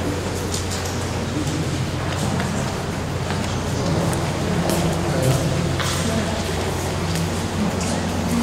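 Interior ambience of a large, reverberant cathedral: a steady low hum under an indistinct murmur of voices, with scattered small clicks and knocks echoing through the space.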